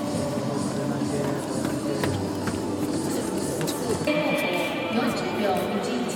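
Indistinct announcer's voice over a stadium public-address loudspeaker, with music playing underneath.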